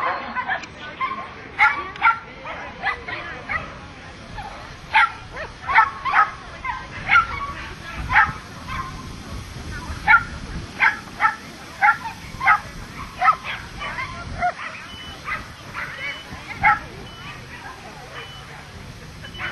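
Parson Russell terrier barking in a long run of short, high yips, about two a second, while it works an agility course. The barking thins out near the end.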